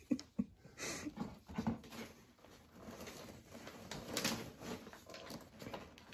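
Gift wrapping paper crinkling and tearing as a wrapped box is opened by hand, in irregular rustles with louder bursts about a second in and around four seconds. A few short, soft vocal sounds are mixed in.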